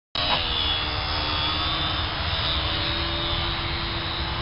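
Electric radio-controlled model aircraft built as a flying doghouse, its motor and propeller running with a steady whine that drifts slightly in pitch, over a rough background noise.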